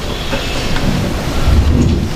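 Handling noise of a handheld microphone as it is passed from one man to another: a low rumbling and bumping, strongest about one and a half seconds in.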